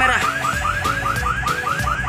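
A fast electronic warbling tone: short rising chirps repeating about seven times a second, without a break.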